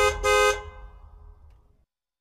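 A vehicle horn beeping twice, a short beep then a longer one, and then fading away.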